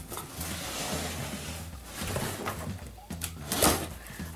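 A cardboard shipping box being cut and pulled open with a red handheld box cutter: cardboard and packing tape scraping and rustling, with a louder burst near the end.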